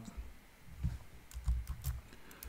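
Several light keystrokes on a computer keyboard, a few faint taps then a quick run of clicks in the second half.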